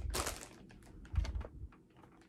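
Handling noise: a scatter of light clicks and taps, with a soft low thump a little over a second in, as the recording camera or phone is moved and re-aimed.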